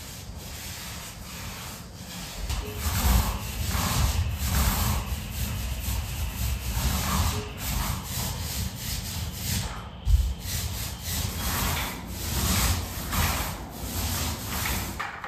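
Paintbrush and small paint roller rubbing back and forth on a ceiling: a run of scratchy strokes, each about half a second long, with a sharp knock about ten seconds in.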